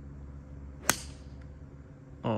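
A four iron striking a golf ball off the tee: one sharp click about a second in.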